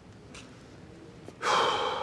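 Low room tone, then about one and a half seconds in a man's short, sharp breathy exhale, loud against the quiet before it.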